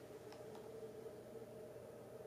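Near silence: faint room tone with a low steady hum, and two faint ticks about half a second in.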